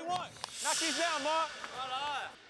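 Indistinct voices talking, quieter than the commentary around them, with a brief high hiss about half a second in.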